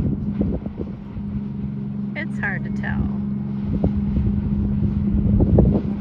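Motor yacht cruising past with a steady low engine drone, wind rumbling on the microphone. Brief indistinct voices about two seconds in.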